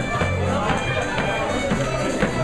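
Live contra dance band led by fiddles, with guitar and keyboard backing, playing a dance tune continuously.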